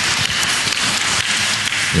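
Audience applauding in a large hall, a steady patter of many hands.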